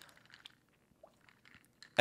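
Faint sipping through a straw from an iced drink, with a few small clicks, in near silence.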